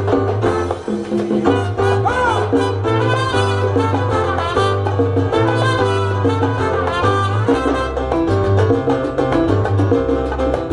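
Live salsa band playing, with horns over a steady bass line and Latin percussion.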